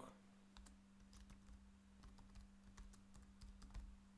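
Faint typing on a computer keyboard: soft, irregularly spaced key clicks over a steady low electrical hum.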